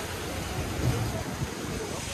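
Steady wash of small waves breaking on the beach, with wind rumbling on the microphone.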